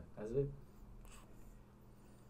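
A man says a short phrase, then quiet room tone with a faint, brief rustle about a second in.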